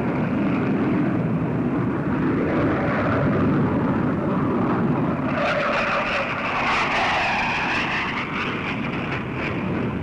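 Military aircraft in formation flying overhead: a steady loud engine noise, joined about halfway through by a jet whine that dips and then rises in pitch.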